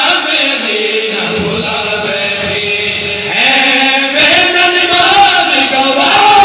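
A man's voice chanting a devotional qasida into a microphone, heard through a PA system; it grows louder about halfway through.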